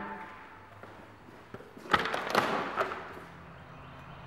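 Glass-paned French door being unlatched and pushed open: a handful of sharp clicks and knocks from the latch and door, bunched together about two seconds in.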